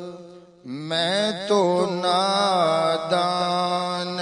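A man singing an Urdu naat (devotional praise of the Prophet) solo into a microphone, with no instruments. A held note fades into a brief pause for breath, then a new phrase starts about two-thirds of a second in, its pitch gliding and ornamented.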